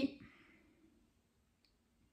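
A spoken word trails off, then near silence: room tone with one faint short click about one and a half seconds in.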